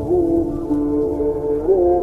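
Truck air horn sounding a loud, sustained multi-tone chord as the Scania truck passes, its pitch bending briefly twice, over a low diesel rumble.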